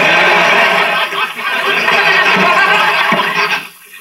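Sitcom studio audience laughing loudly for about three and a half seconds after a punchline, then dying away, heard as played through a television.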